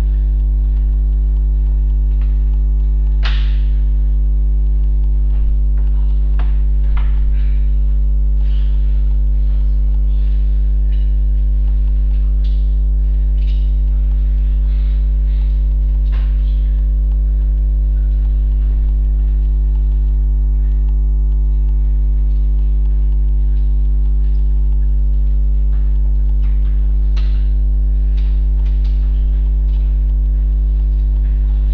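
Loud, steady electrical mains hum at about 50 Hz with many overtones, an interference hum in the recording. A few faint knocks come through underneath, the clearest about three seconds in and a couple near the end.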